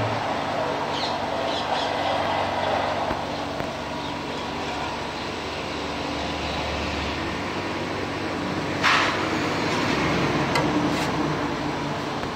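Steam-heated mawa (khoa) making machine running: a stainless steel pan turning under spring-loaded scrapers that scrape the thickening milk against the metal, with a steady motor hum and a faint steady whine. A short, louder burst of noise about nine seconds in.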